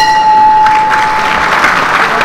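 Applause sound effect: a crowd clapping and cheering, swelling up about half a second in, over a steady bell-like ringing tone that fades out about a second and a half in.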